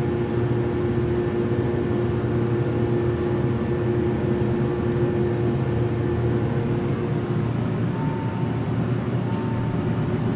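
A Montgomery hydraulic elevator car travelling up one floor with a steady hum. The hum eases off in the last few seconds as the car slows to level at the floor.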